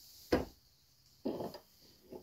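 Quiet handling sounds: a single sharp click about a third of a second in, then a short soft rustle just over a second in.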